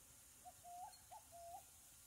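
Faint bird call: two pairs of soft notes, each pair a short note followed by a longer one that lifts in pitch at the end.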